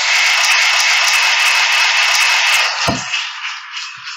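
Congregation applauding: a dense, steady clapping that fades about three seconds in, with a short low thump near its end.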